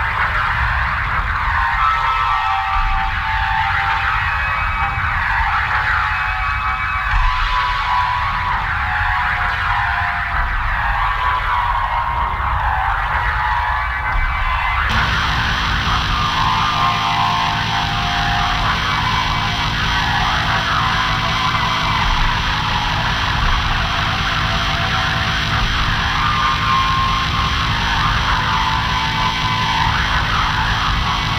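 Industrial music built from sampled and programmed noise: a loud, dense, churning drone with pitched layers sliding around in the middle register. About halfway through it changes abruptly into a thicker, fuller wall of sound.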